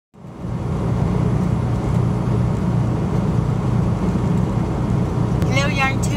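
Steady low drone of a semi-truck's diesel engine, heard from inside the cab. A few spoken words come in near the end.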